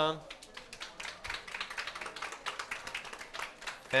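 Applause from a small audience, the separate hand claps distinct.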